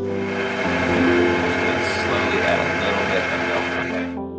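Electric stand mixer running with its wire whisk, beating butter, powdered sugar and honey into frosting: a steady whirring noise that cuts off at the end, over gentle harp music.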